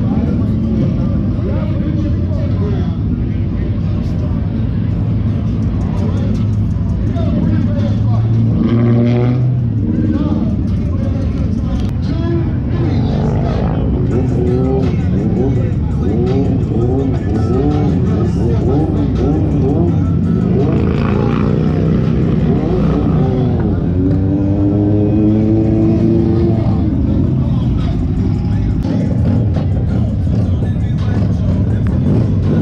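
Motorcycle engines running at low speed as bikes creep along in a slow race, a steady low engine sound throughout. Music and voices play over it, most plainly in the second half.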